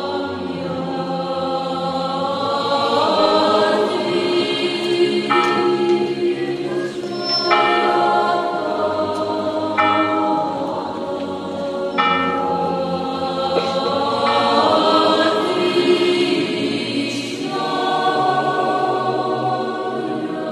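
A choir singing a slow sacred chant in long held chords.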